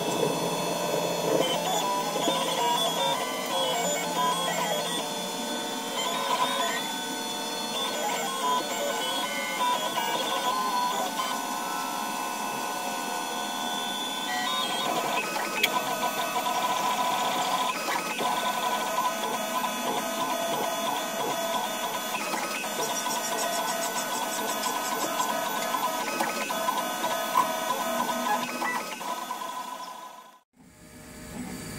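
Stepper motors of a large DIY 3D printer (recycled Nema23 motors) whining as the print head traces the part, their tones jumping from pitch to pitch with each move, with fast stuttering during short moves. The sound fades out at the end.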